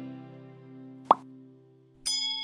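Acoustic guitar intro music dying away, with a single short rising pop sound effect about a second in.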